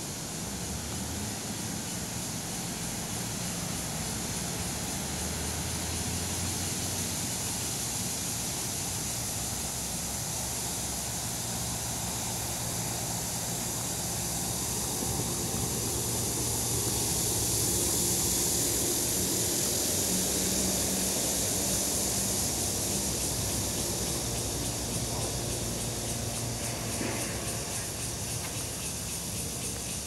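Steady outdoor ambience: a high, even hiss that grows louder a little past halfway, over a low steady rumble.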